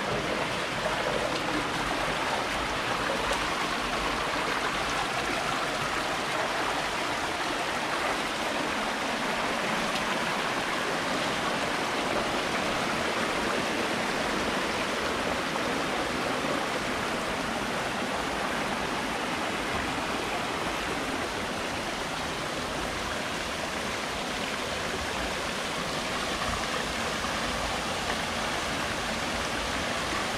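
Shallow rocky stream running over boulders: a steady rush of water.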